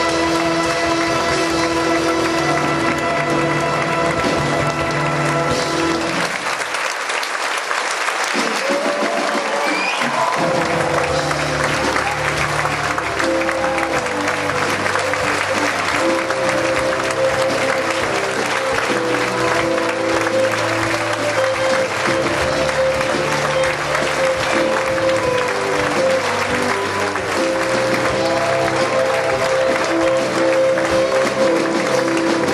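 A school symphony orchestra plays curtain-call music over steady audience applause. A held chord ends about six seconds in, leaving a few seconds of applause alone, and then the orchestra starts a new rhythmic passage under the continuing clapping.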